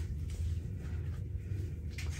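Steady low room hum, with a few faint, short soft sounds as the wig's lace is handled.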